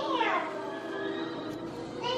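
A single meow-like call that falls steeply in pitch over about half a second, right at the start.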